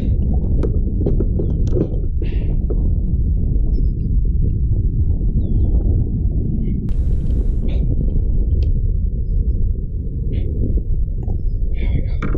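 Wind on an action-camera microphone: a steady low rumble throughout, with scattered small clicks and knocks and a brief hiss about seven seconds in.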